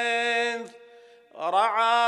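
A single man's voice chanting a mournful Arabic elegy into a microphone. He holds one long steady note that stops about half a second in, then after a short pause begins a new phrase that slides up in pitch and settles on another held note.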